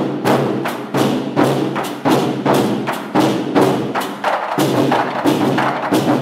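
Ensemble of large Chinese barrel drums beaten with wooden sticks in unison, a driving rhythm of heavy strokes with strong accents about every half second to second.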